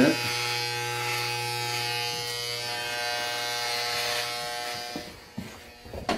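Electric hair clippers buzzing steadily as they cut through a full beard, stopping about four and a half seconds in.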